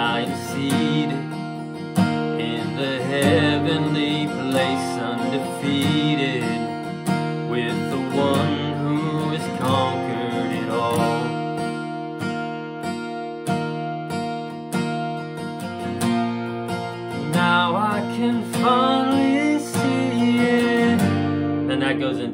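Acoustic guitar strummed in open G-shape chords with a capo on the third fret, so it sounds in B-flat, with a man singing over it. The voice drops out for a few seconds in the middle while the guitar carries on alone, returns, and the playing stops at the end.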